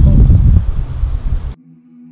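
Wind buffeting an outdoor microphone, a loud low rumble that cuts off suddenly about one and a half seconds in. Soft ambient music with long held notes follows.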